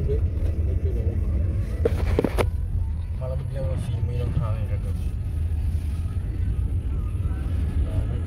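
Car driving, heard from inside the cabin: a steady low rumble of engine and road. A brief noise cuts across it about two seconds in.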